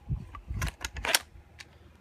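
Handling noise: a quick, irregular run of clicks and knocks, the sharpest about a second in.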